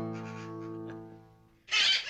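The song's last held note rings and fades away, then near the end a loud, harsh conure squawk breaks in.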